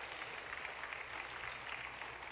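Faint, steady applause from a congregation, with no single claps standing out.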